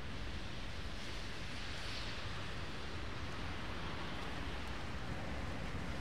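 Steady hiss of rain and traffic on a wet city street, with a swell of tyre hiss about two seconds in.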